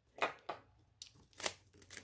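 Paper sticker sheets being handled and shuffled by hand: a few short, soft rustles.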